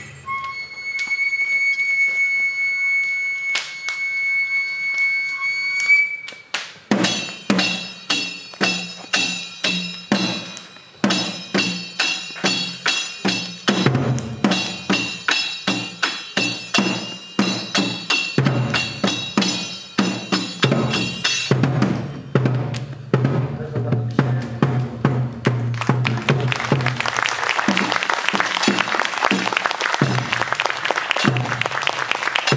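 Tsugaru kagura shrine music. It opens with a transverse flute holding one high note that rises slightly at its end. About seven seconds in, a taiko drum and small hand cymbals take up a fast, steady beat, each stroke ringing metallically. Near the end the cymbals drop out, leaving the drum under a growing hissing wash.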